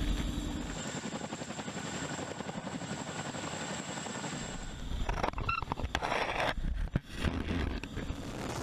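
A heavy-lift helicopter hovering close overhead, with the steady, fast beat of its rotors. The sound shifts about halfway through.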